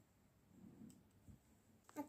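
Near silence with a few faint clicks of plastic toy train track sections being pressed together, the sharpest just before the end.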